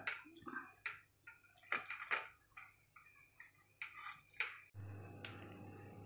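A steel ladle tapping and scraping against an aluminium pot and a ceramic bowl, a few faint scattered clicks. Just before the end it gives way to a steady faint hum.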